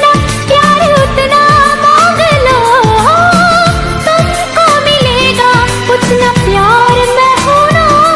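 A Hindi film song: a singer's voice carries a wavering melody over a steady beat of deep, falling bass hits about twice a second.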